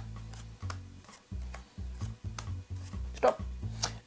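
Background music with a steady bass line, over which playing cards are dealt one at a time onto a padded mat, giving light ticks about two or three times a second.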